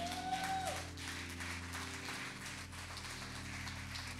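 Soft sustained background music chords hold steady under a pause in the sermon, with light scattered applause and a brief gliding vocal call from the audience near the start.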